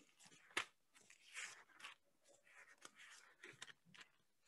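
Faint rustling of thin Bible pages being leafed through by hand: a short flick about half a second in, then a few soft page rustles and tiny ticks.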